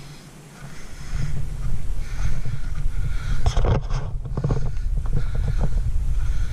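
Wind buffeting the camera microphone in an uneven low rumble that swells up about a second in, with a few footsteps crunching on a gravel dirt track.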